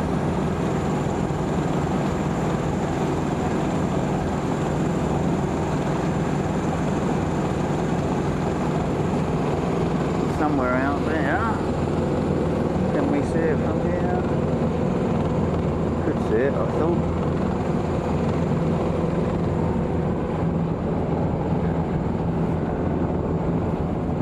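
A sailing yacht's engine running at a steady, even drone while the boat motors along at sea.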